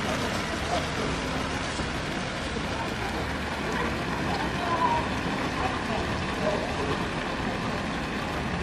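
Fountain jets splashing steadily into a pool, an even rush of falling water, with faint voices of passers-by underneath.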